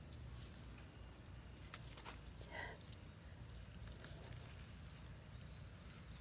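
Faint rustling of sweet pea vines and light crackling clicks as pea pods are picked by hand, over a low steady rumble.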